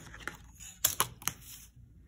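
Rulers being handled and set down on paper: a clear plastic grid ruler laid across the drawing sheet, giving a few light clicks and taps, the sharpest cluster about a second in.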